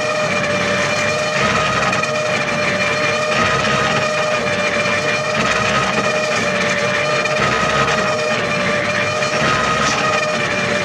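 A steady machine whine over a noisy rush, holding one pitch without a break.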